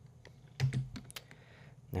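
Computer keyboard and mouse clicks at a desk: one short, slightly heavier knock about half a second in, then a few light clicks about a second in.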